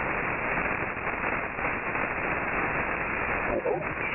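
Hiss and static of the HF ham band through a single-sideband receiver, heard through a narrow voice filter with nothing above about 2.8 kHz, in a gap in an on-air voice conversation. Near the end, an operator's voice on sideband starts to come in.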